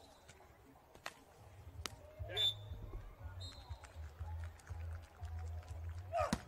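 Faint court sound of a beach volleyball rally: a couple of sharp hits of the ball in the first two seconds, then short high referee's whistle blasts as the point ends.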